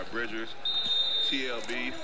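A basketball being dribbled on a hardwood gym floor under quieter voices, with a steady high-pitched tone held for most of a second in the middle.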